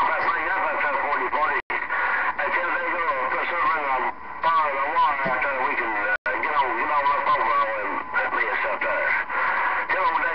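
Voices of CB radio operators coming through a Galaxy CB radio's speaker. The sound cuts out briefly twice.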